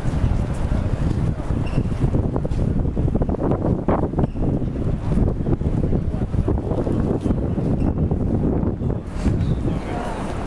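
Wind buffeting the microphone: a loud, low, gusting rumble that rises and falls unevenly.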